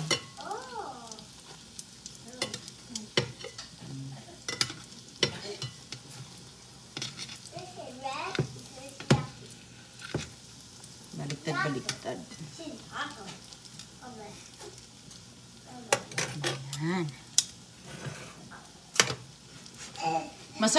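Lumpia frying in shallow oil in a stainless steel skillet, sizzling, while metal tongs click and scrape against the pan as the rolls are turned over, with sharp clicks scattered throughout.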